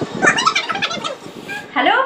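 A woman's voice making a quick run of short, choppy vocal sounds, then she starts speaking near the end.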